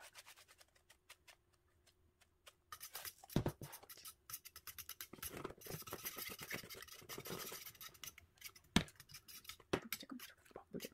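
Thin wire whisk beating eggs in a small stainless-steel bowl: a fast, scratchy clatter of metal on metal that starts about three seconds in, with a couple of sharper knocks against the bowl. Before that only a few faint ticks.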